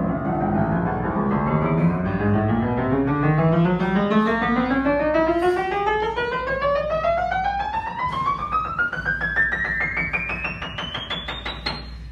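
Sohmer & Son studio upright piano played in a run that climbs steadily from the bass up to the top treble, note after note, speeding up toward the end: a check that every note plays.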